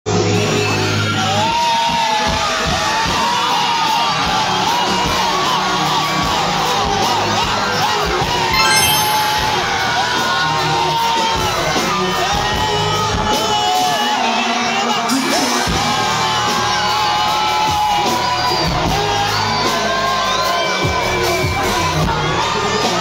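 Loud live concert music through a PA, with a heavy bass line, under a packed crowd yelling, whooping and singing along. A brief louder burst comes about nine seconds in.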